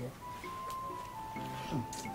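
Background film music with long, steady held notes, and a brief murmur from a voice about a second and a half in.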